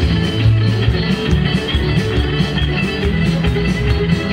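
Live band playing, a fiddle bowing the lead line over bass guitar and drums.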